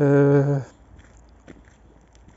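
A man's voice holding one level, drawn-out hesitation sound ("yyy") for about half a second, then quiet with a faint click.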